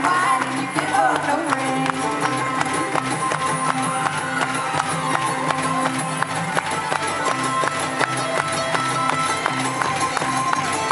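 Live acoustic bluegrass band playing a fast number: rapid banjo and acoustic guitar picking over a driving beat, with fiddle lines, heard from the audience in a hall.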